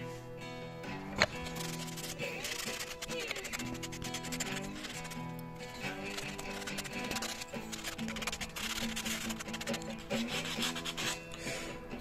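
Sandpaper on a block rubbing quickly back and forth over the wooden pump forend of a Colt Lightning carbine, over acoustic guitar music. A single sharp click about a second in.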